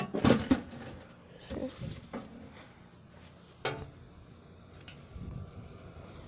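Curbside mailbox being opened and mail taken out: two loud clanks right at the start, a few softer knocks, and one sharp click a little past halfway.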